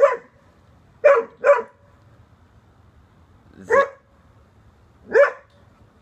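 A pet dog barking in short single barks, five in all: one at the start, a quick pair about a second in, then two more spaced out.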